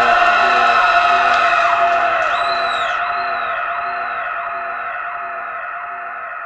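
Electronic synthesized drone: several steady high tones over a low note that pulses roughly every half second, fading slowly. Its top end cuts off about halfway through.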